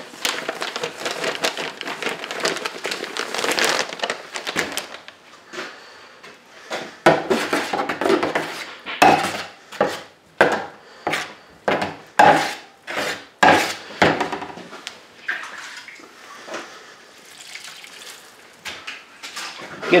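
Dry setting-type joint compound powder poured from a paper bag into a steel mud pan, a hiss for the first few seconds. Then a drywall taping knife mixing and scraping the compound against the pan, strokes about twice a second, fading toward the end.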